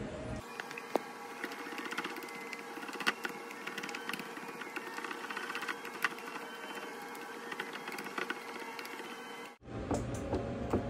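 A spatula stirring egg yolks and cream cheese in a ceramic bowl: soft scraping with irregular clicks of the utensil against the bowl's sides, over a faint steady hum.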